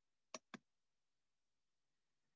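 Two quick computer-mouse clicks about a fifth of a second apart, in an otherwise near-silent small room.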